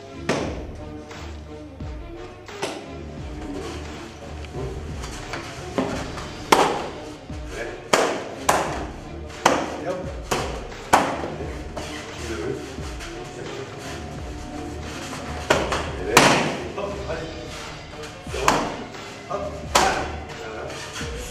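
Kicks and gloved punches smacking into a coach's handheld focus pads: about a dozen sharp slaps at irregular intervals, clustered between about six and eleven seconds in and again near the end, over background music.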